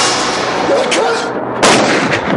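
A single loud gunshot about one and a half seconds in, after a swell of rising noise.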